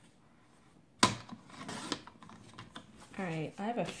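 A Fiskars sliding paper trimmer cutting a strip of scrapbook paper: a sharp click about a second in as the blade carriage engages, then about a second of scraping as it slides along the rail through the paper.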